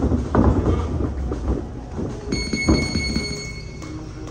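A steady high tone held for about a second and a half, starting a little past the middle. It sounds over low rumbling room noise and a few knocks near the start.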